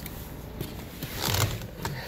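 Handling noise inside a car cabin: rustling and light clicks as someone moves about in the driver's seat, with a short scraping rustle a little over a second in.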